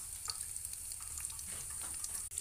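Chopped green chillies and coarsely crushed spices sizzling in hot oil in a non-stick frying pan: a steady hiss with small scattered crackles.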